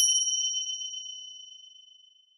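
A single bright ding, like a small bell or chime struck once, ringing on a high clear tone and fading away over about two seconds: a sound effect edited in over a caption.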